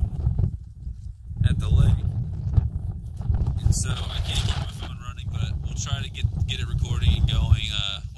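Strong, gusty wind buffeting a phone's microphone: a loud, uneven low rumble, with a brief lull about a second in.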